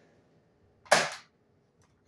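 Nerf Roblox Viper Strike dart blaster firing once, a single sharp pop about a second in, as it shoots its last dart.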